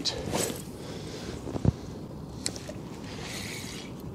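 Casting and retrieving a spinner on a spinning rod while wading in calm water. A soft swish just after the start, a short knock about one and a half seconds in and a brief click about a second later come from handling the rod and reel, over a steady faint hiss of water and light wind.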